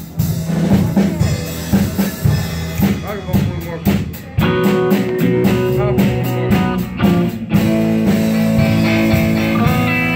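Live band playing a swing number: a drum kit keeps a steady beat under electric guitar. About four and a half seconds in, long held guitar notes come in over the drums.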